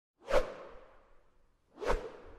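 Two whoosh sound effects from a logo intro animation, about a second and a half apart, each swelling quickly and then trailing off.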